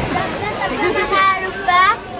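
Young girls' voices and chatter, with a high-pitched cry about a second in and another, rising, near the end.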